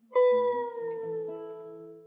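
Two guitars playing a closing phrase: a note struck sharply just after the start slides slightly down in pitch as it rings, lower notes join beneath it, and everything dies away near the end.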